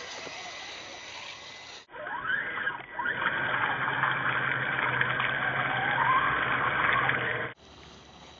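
The electric motor and gear drive of a scale RC crawler whine, rising and falling in pitch with the throttle, as it drives through muddy water with some splashing. The sound is quieter for the first two seconds, louder from about three seconds in, and breaks off near the end.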